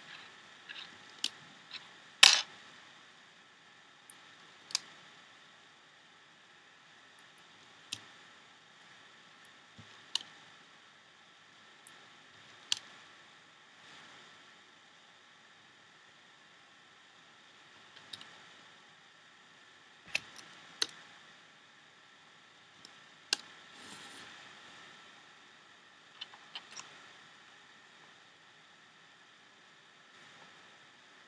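Irregular sharp clicks and snaps of rubber loom bands being stretched onto the clear plastic pegs of a Rainbow Loom, with fingers tapping the plastic. The loudest click comes a little over two seconds in, and there are a few seconds without clicks in the middle, over a faint steady hiss.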